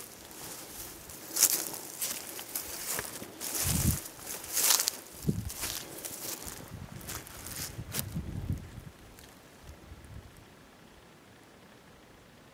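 Footsteps and brush rustling and crackling against clothing as someone walks through young spruce and dry weeds, with a few dull thuds; it stops about nine seconds in, leaving faint outdoor background.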